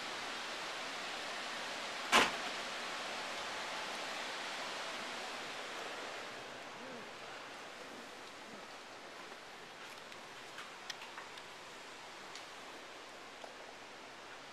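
Steady hiss of room noise in a large, open hotel atrium, growing quieter about six seconds in as it gives way to the hush of a carpeted corridor. A single sharp click about two seconds in, and a few faint ticks later.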